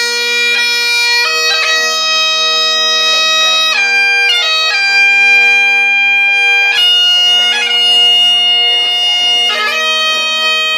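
Bagpipes playing a slow tune: the chanter holds each note for one to three seconds, with quick ornament notes at each change, over a steady unbroken drone.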